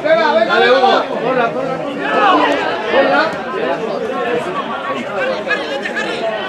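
Several people talking at once close by, a loud mixed chatter of voices with no single clear speaker: spectators talking at the side of a football pitch.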